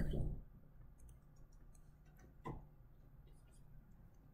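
Faint, scattered clicks and taps of a stylus on a tablet screen while drawing, with one slightly stronger tap about halfway through.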